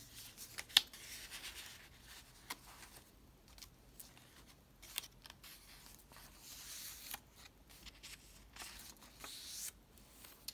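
Paper and card being handled in a handmade junk journal: cards slid into a paper pocket and a thick page turned, giving soft rustles and a few sharp clicks, the sharpest just under a second in.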